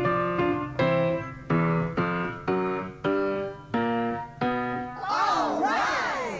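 Music: a keyboard plays a slow series of struck chords, each left to fade before the next. Near the end, a swirl of swooping, wavering tones rises over it.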